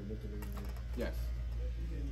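Brief spoken words ("okay", "yes") over a steady low room hum, with a couple of light clicks about half a second in from barber shears being handled.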